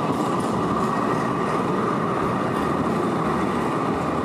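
Light rail train rolling past on street tracks: a steady, even running noise of the cars on the rails.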